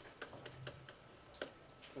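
Faint, irregular clicks and taps of a stylus pen on a tablet screen as handwriting is written.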